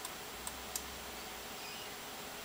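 Three faint computer-mouse clicks in the first second over a steady background hiss.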